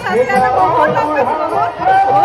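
Women's voices chatting, several speaking close together.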